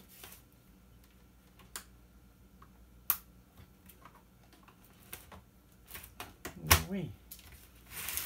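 A small flathead screwdriver prying at the seam of an LCD monitor's plastic case, giving scattered sharp plastic clicks and snaps. They come in a cluster near the end, where the loudest snap is.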